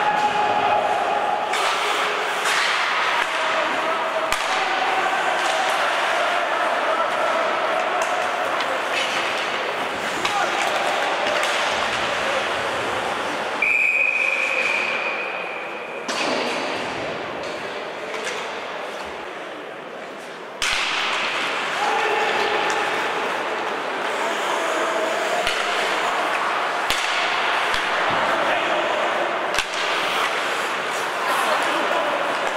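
Ice hockey rink sounds: shouting voices echo over the ice, with scattered clacks and knocks of sticks, puck and boards. Midway through, a referee's whistle is blown once, a steady shrill tone of about two and a half seconds that stops play.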